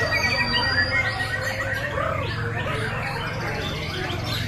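Many caged white-rumped shamas (murai batu) singing at once during a judged contest round: a dense tangle of overlapping chirps, trills and whistled glides, over a steady low hum.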